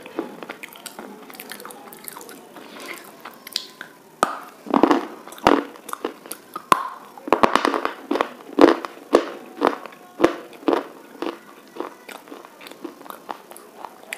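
Close-miked biting and chewing of hard, brittle pieces: sharp, irregular crunches coming in clusters, sparse at first and thickest from about five seconds in.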